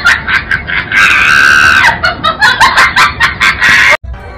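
High-pitched screaming: short shrill cries, then one long scream about a second in, then more rapid shrieks. The sound cuts off suddenly at the end.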